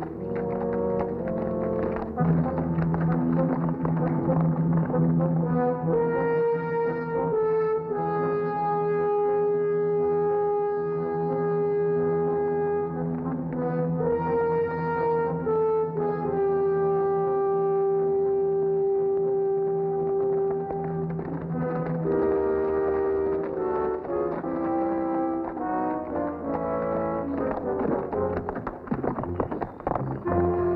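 Orchestral background score with brass playing long held notes over a sustained low note, the melody changing pitch every few seconds.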